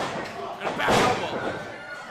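A wrestler hitting the ring mat with a loud slam about a second in, after a smaller impact right at the start, with voices shouting over it.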